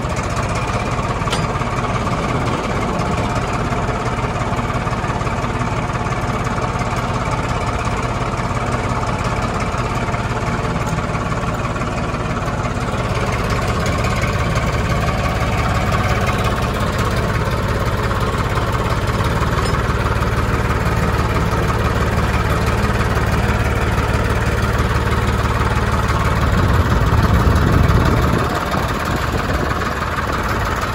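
Farmtrac 60 4x4 tractor's three-cylinder diesel engine running steadily under load while pulling a plough through dry soil. Near the end the engine note swells for a couple of seconds, then drops off sharply.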